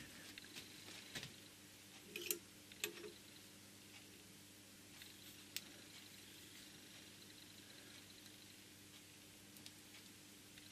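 Near silence with a faint steady hum, broken by a few light clicks and taps as a carbide-tipped steel tool bar is fitted into and handled in a steel fly cutter body. Most of the clicks come in the first three seconds, with one more about five and a half seconds in and another near the end.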